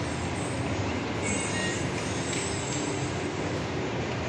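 Steady background noise of a large, nearly empty shopping mall hall, an even rushing hum with no distinct events.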